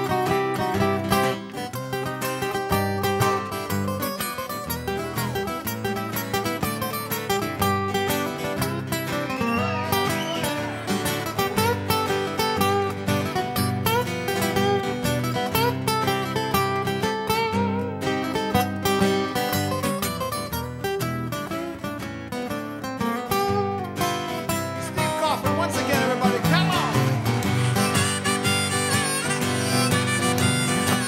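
Live acoustic band playing an instrumental break, with no singing: a flatpicked acoustic guitar lead runs quick single notes over a strummed acoustic rhythm guitar, and a harmonica plays along.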